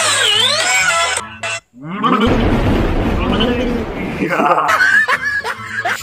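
A sung voice gliding in pitch over a backing music track cuts off about a second in. After a short gap, a man laughs loudly for about two seconds, followed by brief bits of talk.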